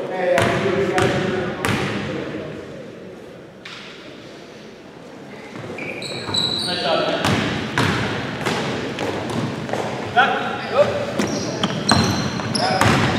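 Basketball bouncing on a hardwood gym floor, echoing in the hall: a few dribbles in the first two seconds, then after a lull a run of bounces and thuds. Players' voices and short high squeaks come in the second half.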